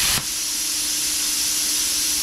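Bestarc BTC500DP plasma cutter torch: a short, loud burst as the pilot arc fires in open air right at the start, then a steady hiss of compressed air blowing through the torch. This is the post-flow that runs on after the trigger is released, to cool the consumables.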